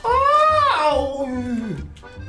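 A man's long, high-pitched falsetto cry of pain that rises and then slides down until it trails off near the end, as the electrode pads of a labour pain simulator shock his abdomen.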